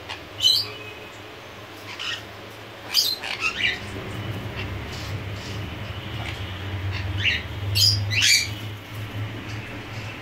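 Caged conures giving short, sharp, high squawks that drop in pitch: one about half a second in, two around three seconds, and a quick run of three between about seven and eight and a half seconds.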